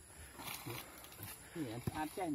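Faint, quiet speech: a man's voice talking in short bits, louder near the end.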